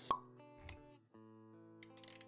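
Intro sound effects over music: a sharp pop about a tenth of a second in, then a bed of held music notes, with a few light clicks near the end.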